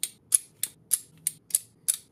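Magnetic Fidlock buckle of a webbing belt clicking as its two halves are snapped together and pulled apart over and over, about three sharp clicks a second.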